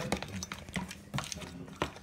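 Metal fork beating eggs and milk in a plastic food container, clicking against the plastic in uneven taps about three times a second.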